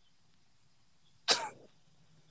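A single short, sharp cough-like burst of breath from a man, about a second in.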